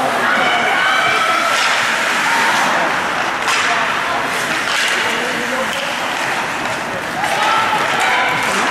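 Indistinct high-pitched voices calling out in an echoing ice rink, over a steady hiss of play on the ice, with occasional sharp knocks of hockey sticks and puck.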